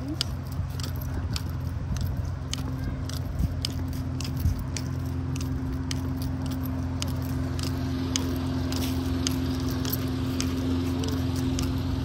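Light, irregular clicking and jingling from a small dog being walked on a leash over a concrete sidewalk, with the leash's metal hardware and dangling tag jangling, over a steady low hum that holds one constant tone.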